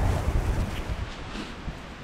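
Wind buffeting the microphone, a low rumble that dies away over the two seconds.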